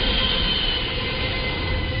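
Jet airliner passing low overhead with its landing gear down: a loud, steady engine rumble with a high whine that slowly falls in pitch.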